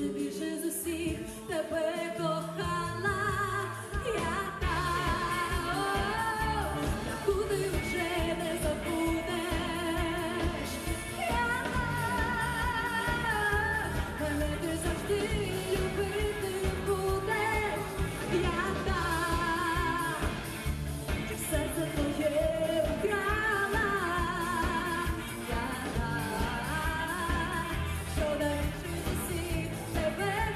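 A woman singing a Ukrainian pop song with a live band of drums, guitars and keyboards. Her voice carries a clear vibrato over a steady beat, and the band fills out about four seconds in.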